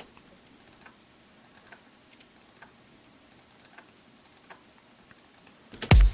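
Faint, scattered clicks of a computer mouse and keyboard, a second or so apart, as drum notes are entered in a piano roll. Right at the end a loud drum hit begins as the beat starts playing back.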